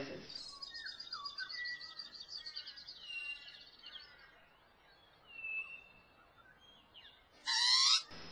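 Pied butcherbird song: fluting whistled notes that glide up and down under a fast, high, chattering trill, then two single clear whistles. A short louder call comes near the end.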